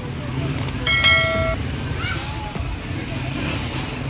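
A vehicle horn sounds once, a short single-pitched toot about a second in, over the steady low rumble of motorcycle and street traffic engines and faint chatter.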